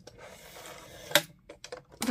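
Plastic parts of a rotary paper trimmer being handled: a soft rubbing or sliding for about a second, then one sharp click followed by a few lighter clicks.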